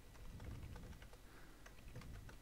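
Faint typing on a computer keyboard: a quick, irregular run of soft key clicks.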